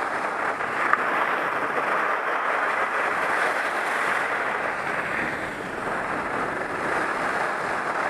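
Steady rushing noise of skis running downhill over firm groomed corduroy snow, mixed with wind on a helmet-mounted camera's microphone. A brief tick about a second in.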